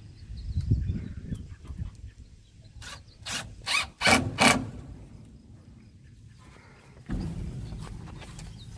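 A hand rubbing and knocking against an upright PVC pipe: a quick run of about five short scrapes and knocks between three and four and a half seconds in. A low rumble sits under it.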